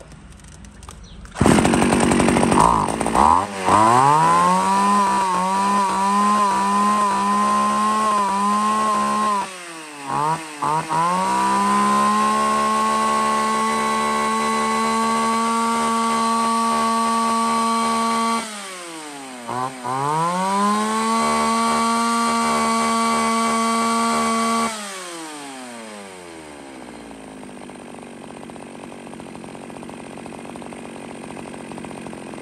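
Echo 331C 34cc two-stroke chainsaw starting up about a second and a half in and being revved to full throttle, held there with a steady high-pitched note. The throttle is let off and blipped twice (around ten seconds in and again around nineteen seconds) and opened up again each time. Near the end it drops back to a quieter, low idle.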